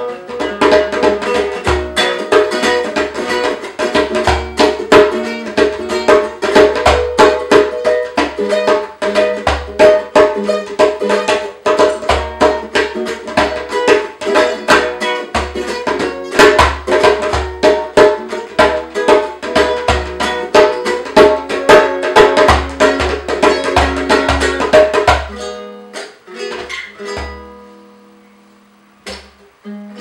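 Guitalele strummed and picked over a hand drum played with the palms in a steady groove. About 25 seconds in the drumming stops and the playing thins out to a few ringing string notes.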